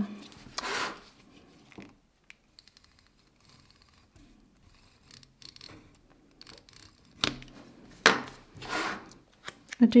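Paper sticker strips being handled and rubbed down onto a planner page: short scraping and rubbing sounds, with a sharp click just after seven seconds and a longer rub near the end.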